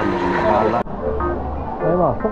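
Steady wind-and-water noise on a small outrigger boat at the shoreline, with voices, ending in an abrupt cut a little under a second in. After the cut, a quieter outdoor background with a brief low hum and light background music.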